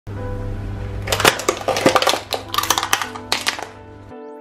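Car tyre rolling over two lidded paper coffee cups in a cardboard cup tray and crushing them: a dense run of sharp cracks and crackles from about a second in until shortly before the end, over background music.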